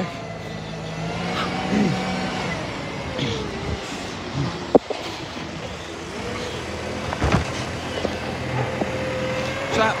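Side-loading garbage truck running as it pulls up to the bins, with a steady whine that dips in pitch and rises again. A sharp knock comes about five seconds in.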